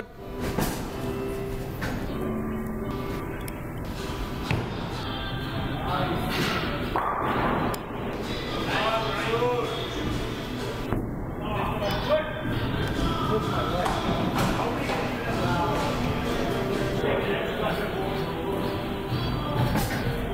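Busy bowling alley ambience: background music and indistinct chatter, with occasional thuds from the lanes.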